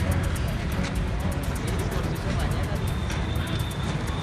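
Street noise with indistinct crowd chatter and traffic, under a background music bed, with a faint steady crackle throughout.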